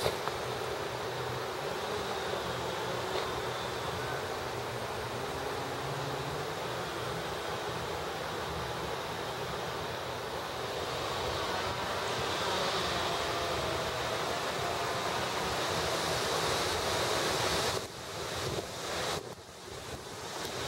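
Steady wind on the camera microphone, a continuous rushing that grows a little stronger in the second half and drops away sharply near the end.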